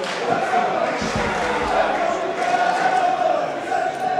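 Football crowd in the stands: many voices blending into a continuous sound of shouting and chanting.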